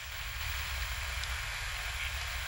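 Steady background hiss with a low rumble beneath it, the noise floor of a 1990s home camcorder recording in a quiet studio room, during a pause in speech.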